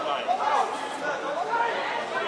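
Many overlapping voices talking and calling out at once, with no words clear.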